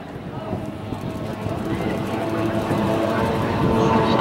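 Racing outboard hydroplanes' two-stroke engines running flat out as a pack, a dense, rough mechanical sound with steady high pitches that grows louder as the boats come closer.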